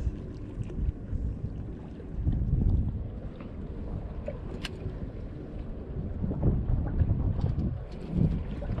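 Wind buffeting an open-air camera microphone: a low, uneven rumble that swells and fades, with a few faint clicks.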